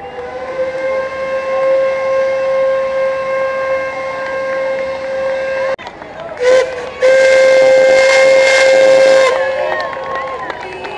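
Steam whistle of La Trochita's narrow-gauge steam locomotive blowing one long steady blast, broken off about six seconds in. It gives a short toot, then another loud blast of about two seconds with a rush of steam, ending about a second before the close.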